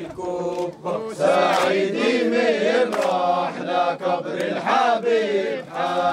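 Male voices chanting a traditional Arabic wedding song in continuous sung lines, with a few sharp hand claps.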